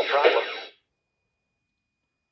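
A short reply in KITT's voice, about a second long at the start, played through the replica dashboard module's small speaker: thin and radio-like, with no low end.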